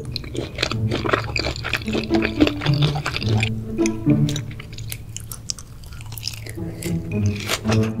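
Background music over close-miked wet chewing and mouth sounds of raw beef being eaten, with short clicks and smacks throughout.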